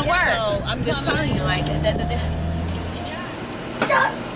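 Steady low hum of a car cabin, engine and road noise, under a woman's voice in the first second or so; the hum stops about three seconds in.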